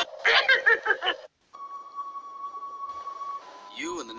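A short burst of a character's voice from a film clip, a brief dropout, then a steady high electronic tone lasting about two seconds.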